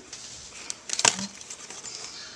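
Handling of a plastic-packaged die set and a clear acrylic ruler laid across it, with a few light clicks and taps, the sharpest just after a second in.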